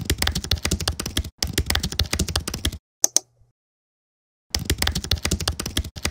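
Computer keyboard typing sound effect: two quick runs of rapid key clicks, a single sharp click about three seconds in, then another run of typing near the end.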